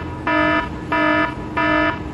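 A loud electronic buzzer alarm sounding in rapid, even pulses, each about a third of a second long, about three every two seconds.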